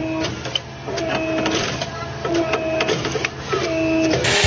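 Rebar bending machine cycling as it bends steel bars: a motor whine that starts and stops about once a second, with sharp metallic clanks of the bars.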